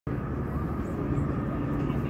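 Steady low outdoor rumble of engine noise, with a faint steady hum over it.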